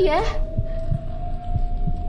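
Suspense sound effect: a low heartbeat-like thumping under one sustained tone that climbs slightly in pitch.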